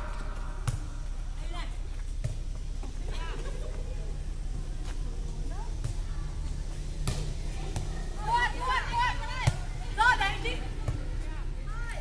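A light inflatable air-volleyball struck by hand during a rally, as sharp slaps a few seconds apart. Players' voices call out faintly in the second half.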